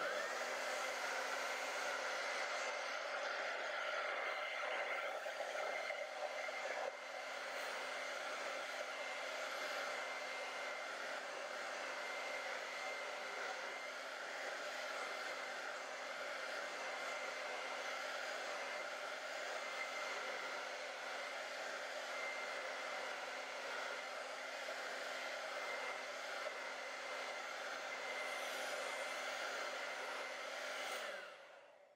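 Handheld hair dryer switched on and running steadily, blowing air with a constant motor hum and a faint whine, drying wet acrylic paint.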